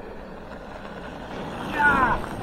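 Two mountain bikes rolling past on a gravel track, the tyre noise swelling as they come close. As they pass, near the end, there is a short high-pitched sound that falls in pitch.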